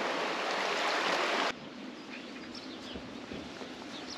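A shallow river running over stones, a steady rush of water that cuts off abruptly about a second and a half in. After it comes quieter open-air background with a few bird chirps.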